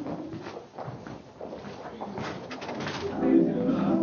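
Scattered footsteps and shuffling on a dance floor with faint voices in a room, then music starts about three seconds in and grows louder.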